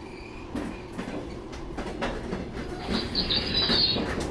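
A lone railway guard's van rolling along the track, its wheels clicking over the rail joints. It grows louder as it comes on, and a high metallic wheel squeal sets in about three seconds in.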